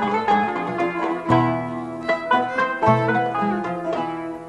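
Traditional Greek–Turkish ensemble playing an instrumental passage: plucked strings (kanun, oud and guitar) carry a quick melody over accordion, violin and hand drum, with many short, sharply struck notes.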